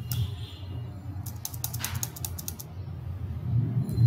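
Computer keyboard typing: a quick run of keystrokes in the middle, over a low steady hum.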